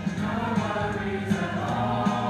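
School show choir of girls and young women singing together over an accompaniment with a steady low bass line.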